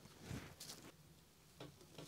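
Near silence, broken by a few faint, short soft knocks and rustles of handling at an open freezer drawer.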